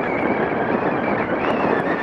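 Steady wind and road rush on the microphone of a camera mounted on a moving bicycle, with a faint wavering whistle-like tone over it.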